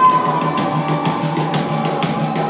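Live pop-punk rock band playing: distorted electric guitar and drum kit, with a held high note fading out in the first half-second.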